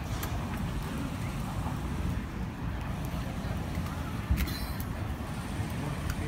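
Outdoor ballpark ambience, a steady low rumble, with one sharp knock about four seconds in.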